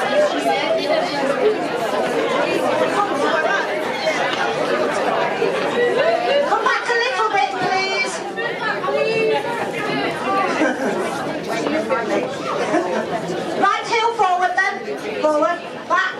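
A group of people chatting at once, many overlapping voices with no music, echoing in a large hall.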